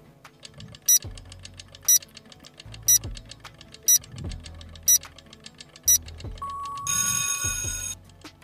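Quiz countdown-timer sound effect: fast ticking with a louder tick once a second over low bass notes. Near the end comes a short beep and then a loud alarm-clock ring marking time up.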